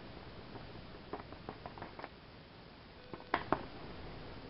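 Clumps of gold powder tipped off a folded paper into a ceramic crucible dish, falling in as a few faint light ticks and patters, then two sharper clicks near the end.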